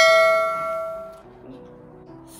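A single bell-like chime sound effect that rings and fades away over about a second, added with the subscribe-button animation as its cursor clicks the bell icon.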